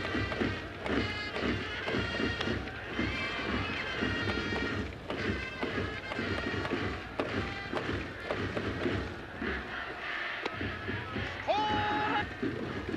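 A baseball cheering band in the stands playing a brass melody over a steady drum beat.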